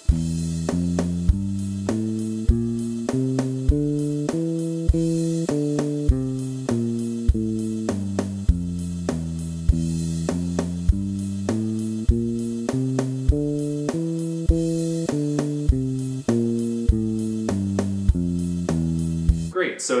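Four-string Peavey Cirrus electric bass playing an E Locrian scale one note at a time, stepping up and down the scale and back over and over, with a steady drum track behind it. The notes stop just before the end.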